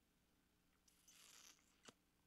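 Near silence: faint room tone, with a soft hiss about a second in and a small click near the end.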